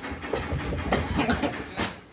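Irregular knocks, thumps and rustling as people move about on a bed, with handling noise from a handheld camera.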